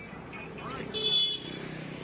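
Roadside street noise with a steady low engine hum, and a short high-pitched vehicle horn toot about a second in.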